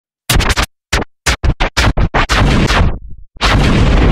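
DJ scratching and stuttered cuts on a hip-hop track: about ten short, sharp bursts with silences between them. The bursts run together and lose their top end near the end, and the steady slowed-down beat comes in about three and a half seconds in.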